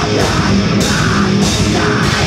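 Heavy metal band playing live and loud: guitar and drum kit, with a bright cymbal-like accent about every 0.6 seconds.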